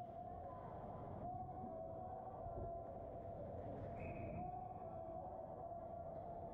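Indoor ice rink ambience during a hockey game: a low rumble with a steady, slightly wavering high hum, and a short higher beep-like tone about four seconds in.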